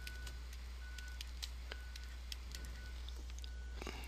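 Faint stylus clicks and taps on a tablet screen as handwriting is written, over a steady low electrical hum.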